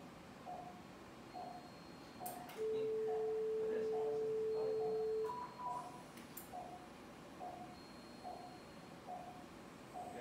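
Operating-theatre electronics: a patient monitor's pulse beep sounds steadily about every three-quarters of a second. About two and a half seconds in, a surgical energy-device generator gives a loud steady tone for nearly three seconds while the instrument is activated on tissue, then a short higher two-note tone.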